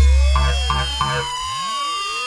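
Electronic breakbeat music: many synth tones glide up and down across each other like sirens. Under them a deep bass note fades out over the first second and a half, with three short stabs in the first second.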